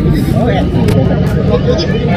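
Crowd chatter: several voices talking over one another above a steady low rumble, heard through a phone recording.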